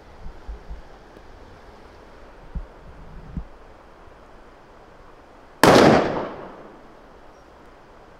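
A single loud hunting-rifle shot about two-thirds of the way in, its report fading over about a second. A few soft low thumps come before it.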